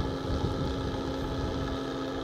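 A fishing boat's motor running steadily: a constant low rumble with a steady hum.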